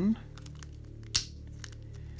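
A single sharp plastic snap about a second in as the gear cover on a small toy car's chassis is clipped back into place.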